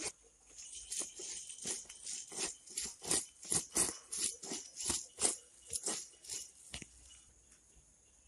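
Garlic cloves and dried chilli being crushed on a stone grinding slab: a run of short crunching strokes of stone on stone, about three a second, which stop about 7 s in.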